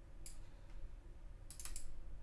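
Computer mouse clicking while points are set on a drawn envelope: one click about a quarter second in, then a quick run of three or four clicks near the end, over a faint low hum.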